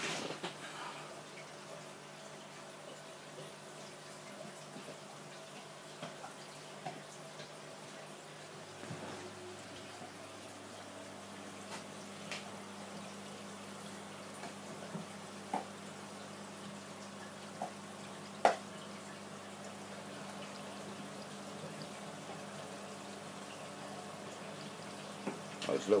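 Fish-room ambience: a steady hum from aquarium air pumps under the faint bubbling and trickling of water from the tanks' sponge filters and air stones, with a few scattered clicks and drips.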